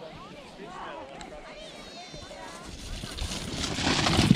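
Children's voices calling in the distance, then a sled sliding over snow, its scraping hiss swelling as it rushes past close by near the end.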